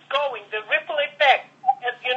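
Continuous speech from one voice, which sounds thin and narrow like a voice heard over a telephone line.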